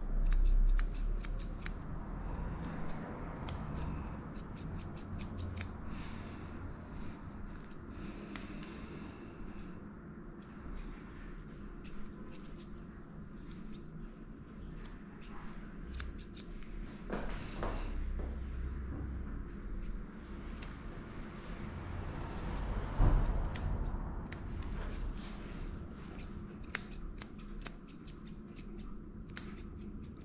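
Grooming scissors snipping the hair around a dog's paw pads, in quick runs of small sharp clicks. Two low thumps, one about half a second in and one about two-thirds of the way through, are the loudest sounds.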